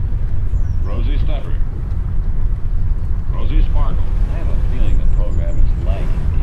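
Steady low rumble of a car driving, with snatches of a voice from an old radio broadcast heard over it.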